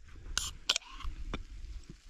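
Aluminium drink cans being opened: ring-pull tabs clicking and cracking with a short fizzy hiss, a few separate sharp clicks.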